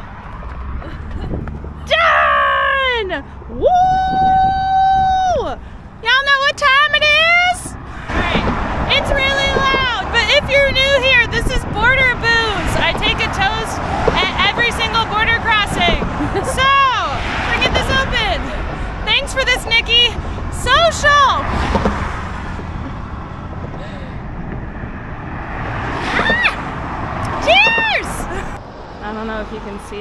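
A woman's voice, high-pitched and excited, with sliding and long held calls more like cheering or sing-song than plain talk, over steady traffic noise from a busy road.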